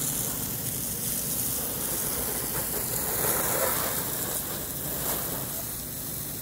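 A garden hose with no nozzle spraying a steady jet of water onto a car's painted body and windows.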